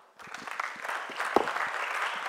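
Audience applause, starting a moment in and quickly swelling to a steady clapping.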